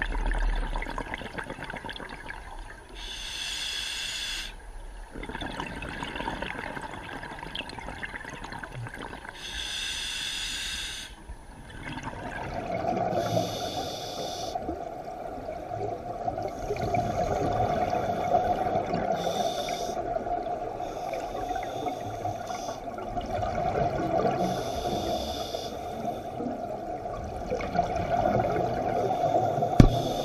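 Underwater scuba breathing through a regulator: bursts of exhaled bubbles every few seconds, each lasting a second or two, with a steady hum joining about twelve seconds in.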